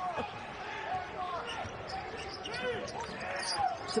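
Basketball game sound from courtside: a ball being dribbled up the court and sneakers squeaking in short pitched chirps on the hardwood floor, over steady arena crowd noise.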